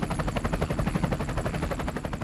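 Light helicopter in flight, its rotor blades beating in a fast, even chop over a low hum.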